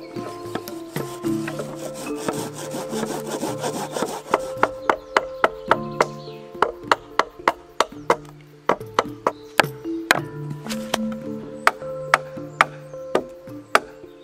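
Woodworking with hand tools under background music: a rasping, saw-like stretch on wood early on, then from about four seconds in a run of sharp wooden knocks, roughly three a second, as the ladder steps are worked into the pole dovetails.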